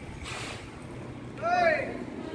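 A short high-pitched voice call, about half a second long, rising then falling in pitch, near the end. It comes over a low steady outdoor rumble, with a brief rush of noise shortly after the start.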